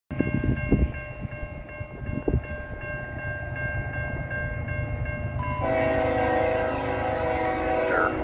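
Approaching CN freight train's diesel locomotive horn sounding a steady chord from a distance over a low rumble. About five and a half seconds in the horn becomes louder and fuller, with more notes. Two dull thumps come in the first few seconds.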